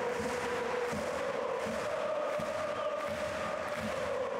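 A large crowd of football supporters singing a chant in unison: one long held note that steps up to a higher note about two seconds in, over the noise of the crowd.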